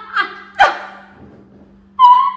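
Women shrieking with laughter: two short, high-pitched whoops in the first second, then it fades off.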